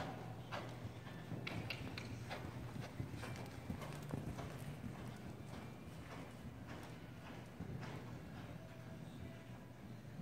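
Hoofbeats of a horse cantering on sandy arena footing, a quick, uneven run of strikes.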